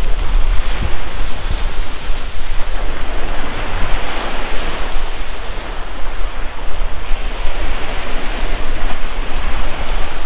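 Wind-driven lake waves breaking and washing up a sandy shore in a steady, unbroken rush, with strong wind buffeting the microphone as a low rumble.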